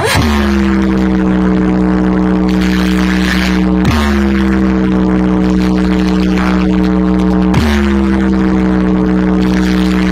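A large DJ speaker-box wall playing a loud bass sound-check tone: a long droning note that starts with a sharp pitch drop, repeated about every four seconds, over a constant deep sub-bass rumble.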